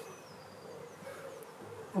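A flying insect buzzing: a faint, steady hum that wavers slightly in pitch.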